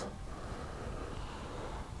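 Quiet room tone: a faint, even hiss with a low rumble underneath and no distinct events.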